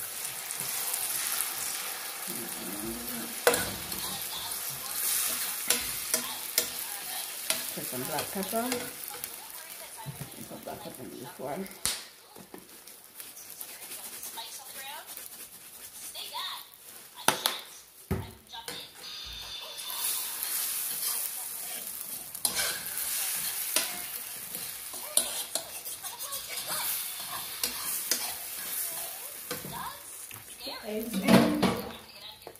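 Eggs sizzling in a nonstick frying pan while a metal fork stirs and scrambles them, with short clicks and scrapes of the fork against the pan.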